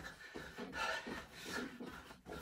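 Faint sounds of a person doing jumping jacks: trainers landing on the floor and movement noise, repeating unevenly at low level.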